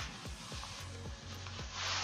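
Quiet background music with a steady beat of low thumps, about three to four a second.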